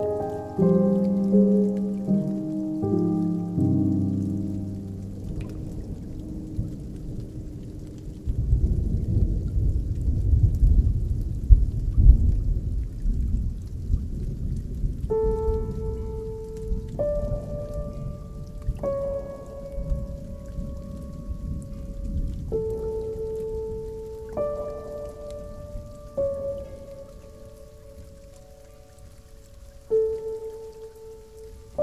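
Slow, melancholy ambient music with a rain-and-thunder soundscape: held chords at first, then a low rumble of thunder over rain that swells about eight seconds in and slowly fades, while single sustained notes sound one after another from about halfway.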